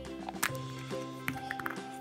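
Background music with steady held notes, and a sharp plastic click a little under half a second in as a hollow plastic toy egg is pulled open, followed by a few lighter clicks.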